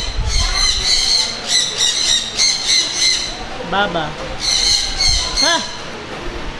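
Many high-pitched animal squawks and chirps repeating several times a second, with a couple of louder rising-and-falling calls about four and five and a half seconds in.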